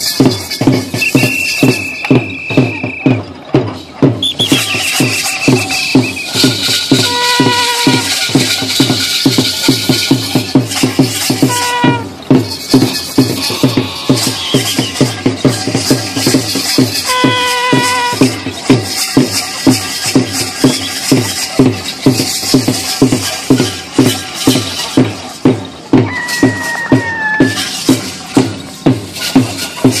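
A drum beaten in a steady, fast, unbroken rhythm, about two to three strokes a second, over a continuous low drone. A few short, high pitched calls or whistles cut in now and then.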